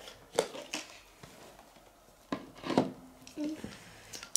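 A hard plastic Mini Brands capsule ball being handled and turned in the hands, giving a few scattered plastic clicks and knocks, the loudest about two and a half seconds in.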